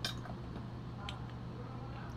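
A sharp plastic click right at the start, then a few faint ticks as a camera battery holder loaded with AA cells is handled, over a low steady hum.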